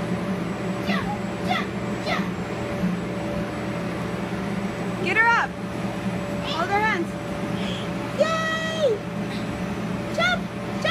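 Inflatable bounce house's electric blower running with a steady hum, while young children let out several short high-pitched squeals and calls, with one longer held call near the end.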